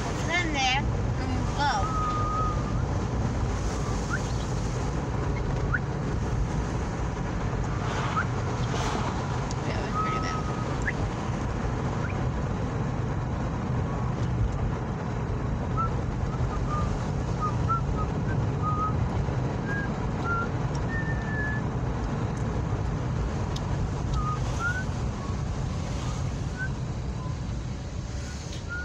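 Steady low rumble of a car driving, heard from inside the cabin, with scattered brief high chirps.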